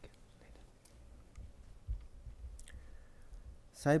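A near-quiet pause picked up by a lectern microphone: scattered faint clicks and a few low thumps from handling at the lectern. A man's speech resumes near the end.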